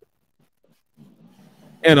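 A pause in men's conversation: about a second of near silence, a faint low hum, then a man's voice starts again near the end.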